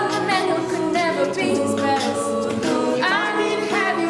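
Youth a cappella group singing in close harmony, held chords shifting in pitch, with a live beatboxer keeping the beat.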